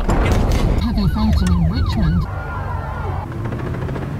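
Emergency siren sounding in quick rising-and-falling sweeps, about three a second, starting about a second in and dropping away after about two seconds, over a low rumble.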